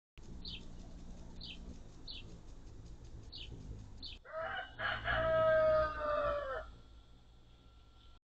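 A rooster crowing once: a long call of about two and a half seconds, a little past halfway through, and the loudest sound here. Before it a small bird gives short, high, falling chirps about once a second.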